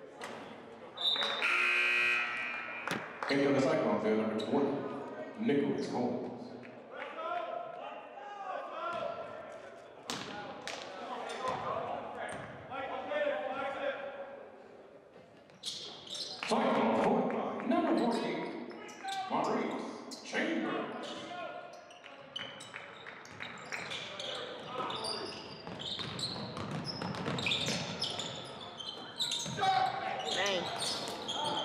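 Basketball bouncing on a hardwood gym floor during play, with players and spectators calling out, all echoing in a large gymnasium.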